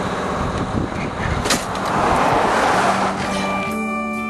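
A vehicle engine running with a rushing noise that swells and fades in the middle, then music with steady guitar-like tones comes in near the end.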